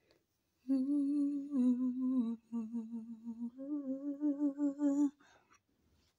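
A woman humming a tune close to the microphone, her pitch wavering through a few held notes. It starts about a second in and stops about a second before the end.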